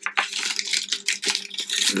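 Crinkly rustling and a quick run of small clicks as packaging and small items are handled on a table.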